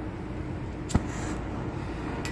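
Propane glassworking bench torch being lit: a single sharp pop about a second in, followed by a brief hiss of gas as the flame catches. A steady low hum runs underneath.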